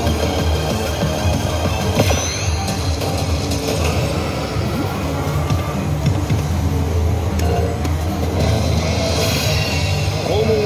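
Music and effect sounds from a High School of the Dead pachislot machine, over the steady low hum and clatter of a busy game center. A sharp click comes about two seconds in.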